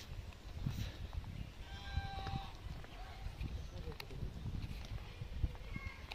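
Low, uneven rumble of wind and handling on a phone microphone while walking outdoors, with faint voices of people nearby and a short, high pitched call about two seconds in.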